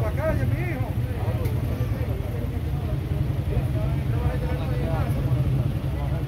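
A steady low vehicle engine rumble, with people talking indistinctly over it near the start and again in the second half.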